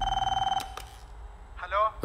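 Telephone ringing with a fast electronic trill, cut off about half a second in, followed by a couple of clicks.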